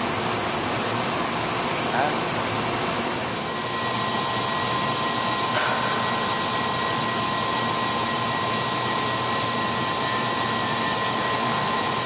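Bryant high-speed motorized spindle running during its final run-off test: a steady hiss, joined about three and a half seconds in by steady high whine tones that hold to the end.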